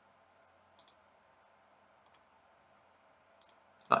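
Faint computer mouse clicks, a few scattered over a quiet background.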